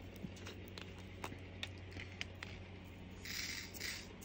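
Small plastic diamond-painting drills poured into a plastic tray, a brief rattle about three seconds in. Faint clicks of the tray and pot being handled come before it.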